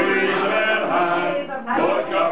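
Men's choir singing together in several voices, with a brief dip about one and a half seconds in before the voices come back in.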